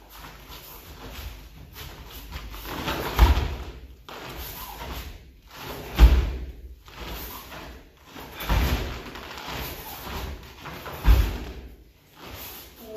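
Four heavy thumps of bare feet landing in stances on foam mats, about two and a half seconds apart, each with a short swish of karate gi cloth.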